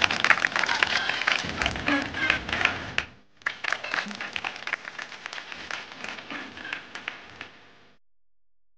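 A group of children clapping and shouting, with many quick sharp claps. The sound drops out briefly about three seconds in, then resumes.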